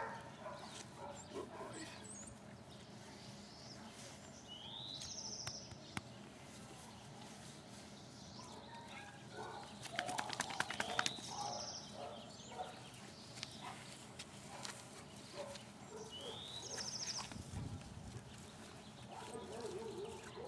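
A bird repeating the same short song about every five to six seconds, a rising note followed by a buzzy trill. About halfway through there is a burst of clicks and scuffling, the loudest sound.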